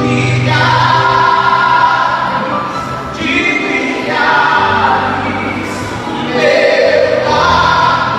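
A man singing a gospel worship song into a microphone through the PA, in long held phrases, with a steady low accompaniment beneath.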